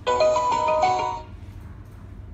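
Portable wooden Bluetooth speaker playing a short electronic jingle of a few stepping notes, about a second long, then stopping.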